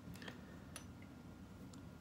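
A few faint, small clicks of flute foot-joint keys being pressed down by hand, over quiet room tone, as the C and C-sharp pads are pressed to seat them and close a leak.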